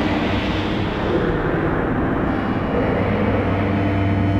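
Synthesizer noise patch (the Korg X5DR's "Jet Star" preset) sounding a dense whoosh with faint held tones beneath. Its brightness dulls after about a second and returns near the end.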